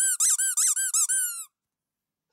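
SL Man squeaker toy figure squeaked repeatedly as it is squeezed, about four to five squeaks a second, each rising and falling in pitch, stopping about one and a half seconds in.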